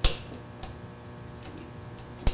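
Wire ring terminals clicking against a metal terminal stud and the metal panel as ground wires are fitted on by hand: one sharp click, then two fainter ticks, over a faint steady hum.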